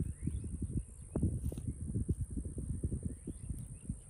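Outdoor microphone rumble: irregular low thumps and buffeting on a handheld phone mic in the open, with a faint steady high hiss and a few faint bird chirps.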